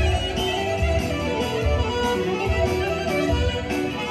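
Live Albanian folk dance music from a wedding band: clarinet and electronic keyboard melody over a pulsing bass beat.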